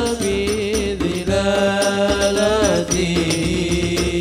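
Hadroh ensemble: hand-beaten frame drums (rebana) keeping a busy, steady rhythm under male voices singing an Islamic devotional sholawat in long, wavering held notes.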